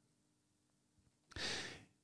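Near silence, then about a second and a half in, a short, soft breath taken by a man at a close microphone just before he speaks again.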